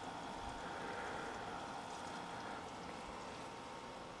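Faint, steady chorus of night insects on a hot summer evening, an even hiss-like drone with no breaks.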